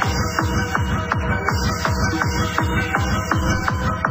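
Techno music with a steady kick drum on every beat, about two a second, and repeating synth notes above it.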